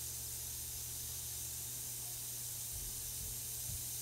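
A Beaker Creatures reactor pod fizzing in a bowl of water: a steady soft hiss of bubbles as the effervescent pod dissolves and breaks open to release the toy inside.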